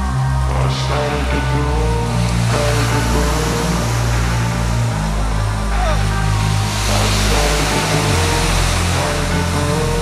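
Background music: an instrumental stretch of a rap song, with long held bass notes under a hazy, noisy texture.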